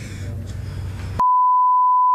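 A low hum with faint noise, then about a second in a loud, steady 1 kHz test tone cuts in abruptly: the reference tone that goes with colour bars at the end of a tape.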